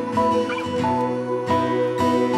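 Strummed acoustic guitar music, with a puppy giving a short whimper about half a second in.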